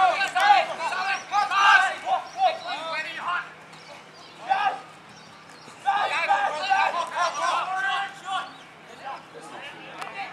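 Indistinct, high-pitched voices calling out in two spells, for the first few seconds and again from about six seconds in, with a faint steady hum underneath.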